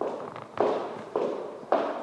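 Footsteps on a hardwood floor, four steps at about two a second, each followed by a short echo.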